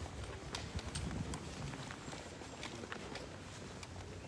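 Footsteps of several people in hard-soled shoes, clicking irregularly on a hard floor.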